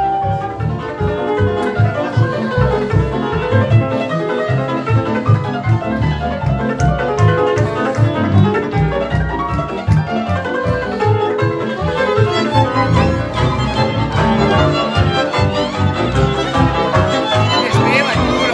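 Cimbalom played in fast, dense hammered runs in Hungarian Roma style, over a steady double bass beat; violins come in near the end.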